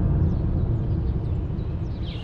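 A deep rumble that starts suddenly and slowly fades, with faint high bird chirps over it.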